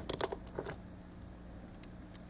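Plastic parts of a small Transformers scout-class toy clicking and clacking as they are unclipped and flipped in the fingers: a quick run of sharp clicks in the first half-second, then a couple of faint ticks near the end.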